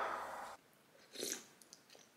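Someone eating a meal: a short burst of chewing and a few light clicks of a spoon against a bowl. These follow a dense noise that cuts off about half a second in.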